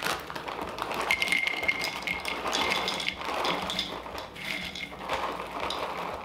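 Dried soy curls poured from their bag into a mixing bowl: a dense, continuous patter of light taps and clicks as the dry pieces hit the bowl and each other, with some faint ringing from the bowl.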